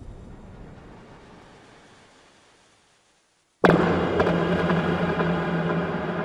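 Logo-intro sound effects: a deep rumble dying away to silence, then, about three and a half seconds in, a sudden loud hit that rings on as a steady, many-toned drone.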